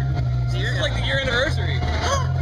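Voices talking over a steady low drone.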